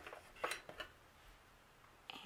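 A few soft clicks and taps from hands handling a paper planner and sticker tweezers, bunched in the first second, then only faint room tone.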